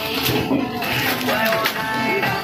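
Background music playing under voices talking.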